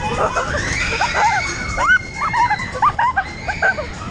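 Riders on a spinning funfair ride shrieking and squealing: a quick run of short, high yelps, thickest in the second half.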